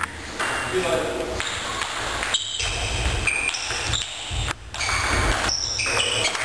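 Table tennis rally: the ball clicking off bats and table in a hall, with short high squeaks and voices in the background.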